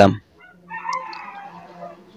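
A man's last spoken syllable, then a faint drawn-out animal call starting about three-quarters of a second in and fading within about a second, over a low steady hum.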